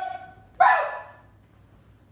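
Two short, high-pitched shouted calls from a man's voice. One fades out at the start, and the other starts sharply about half a second in and dies away within about half a second.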